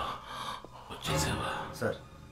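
A man gasping and breathing hard in fright: about three sharp, breathy gasps.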